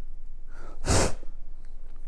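A single short human sneeze about a second in.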